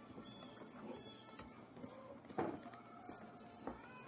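Faint background music with two sharp clicks, the louder one about halfway through and a smaller one about a second later.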